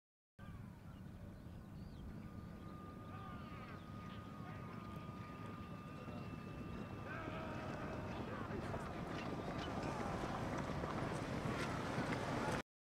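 Indistinct background voices over a dense noise that grows slowly louder, with a faint steady high tone in the middle.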